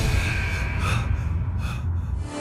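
Short, sharp breaths or gasps, a few of them, over the low bass of background music.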